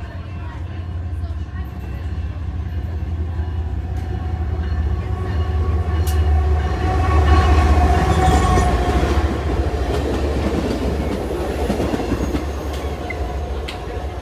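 A BNSF diesel locomotive pulling a short track geometry train passes at speed, its engine and wheels on the rails making a steady deep rumble. The sound builds to its loudest about seven to nine seconds in as the locomotive goes by close, then fades as the train moves away.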